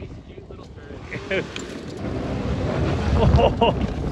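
An all-wheel-drive Hyundai SUV driving hard over snow and dirt. Its engine and tyres grow louder as it comes up close and passes, loudest near the end, with wind buffeting the microphone.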